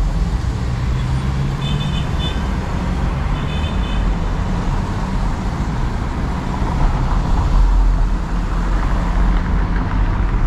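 Cabin noise of a Hyundai Creta 2022 driving in city traffic: a steady low engine and road rumble that swells about seven seconds in. Two short, high-pitched beeps come at about two and three and a half seconds in.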